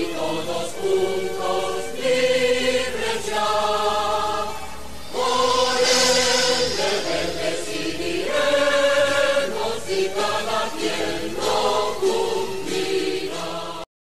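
Choral music: a choir singing sustained chords that change every second or two, stopping abruptly near the end.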